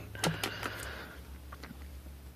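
A few light clicks and paper rustles as a swatch card on the desk is handled, over a steady low bass rumble from neighbours' bass-heavy music heard through the wall.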